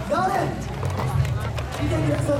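Voices calling out over loud festival music with a low pulsing beat; one rising-and-falling call stands out near the start.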